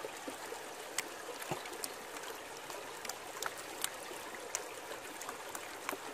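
Shallow river water trickling and lapping around a plastic gold pan as it is washed at the waterline, with a few faint clicks scattered through.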